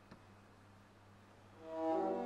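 Quiet room with a faint steady hum and a small click just after the start, then about one and a half seconds in a string quartet of two violins, viola and cello comes in with sustained bowed notes.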